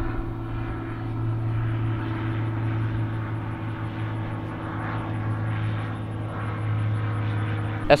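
Propeller airplane flying overhead, a steady low drone that holds level in pitch throughout.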